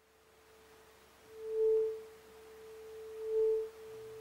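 Tuning fork held over the mouth of a closed resonance tube, sounding a steady pure tone that swells loud twice, about one and a half and three and a half seconds in, as the air column passes through resonance with the fork.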